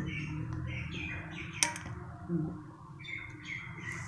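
Small birds chirping repeatedly in short calls, with a single sharp click about a second and a half in.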